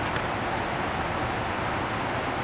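Steady room noise of a large hall: an even low rumble and hiss with no distinct events.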